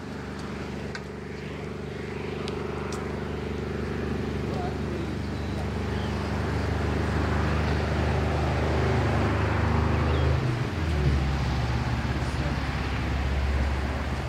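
A man's voice reciting a blessing, over a steady low mechanical hum that grows louder and shifts in pitch about ten and a half seconds in.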